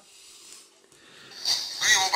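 A quiet pause, then about one and a half seconds in a Doogee F5 smartphone's loudspeaker starts playing back a video recorded on its front camera: faint outdoor background noise, then a man's recorded voice near the end.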